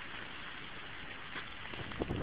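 Faint, steady hiss of light rain, with a few soft clicks near the end.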